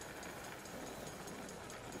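Faint, steady ambience of a curling arena, with no distinct events.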